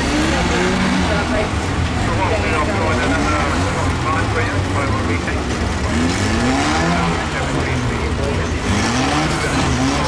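Steady low rumble of stock car engines running while the cars sit stopped on the track, with people talking near the microphone throughout.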